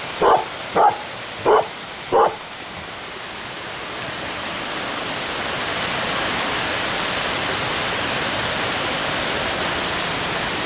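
A bearded collie barks four times in quick succession in the first couple of seconds. Then the steady rush of a rocky stream takes over and grows louder.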